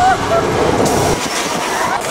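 Open-air studio tour tram rolling, a low rumble that drops away about a second in, leaving a hiss.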